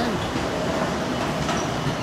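Escalator running: a steady mechanical rumble with a faint hum.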